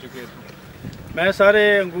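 A man's voice speaking, starting a little past halfway through. Before it there is about a second of low wind noise on the microphone.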